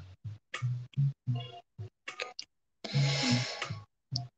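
Lo-fi chillhop background music with a deep bass beat, cutting in and out in short bursts with silent gaps between, the longest burst about three seconds in.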